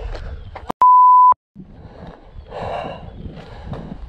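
A censor bleep: one loud, steady beep about half a second long, a little under a second in, with the sound dropping out to silence just before and after it, covering a swear word.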